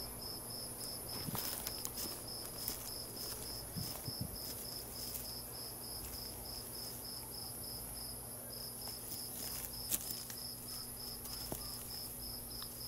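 A cricket chirping in an even rhythm, about three chirps a second, over a faint steady high insect hiss. There is a low steady hum and a few faint clicks.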